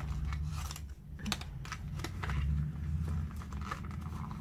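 Small cardboard cosmetics box being handled and opened by hand: an irregular run of light clicks, scrapes and crinkles of card and packaging, over a steady low hum.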